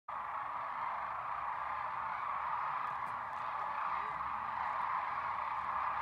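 A huge flock of sandhill cranes calling together as they fly in, their rolling calls merging into one steady, dense chorus.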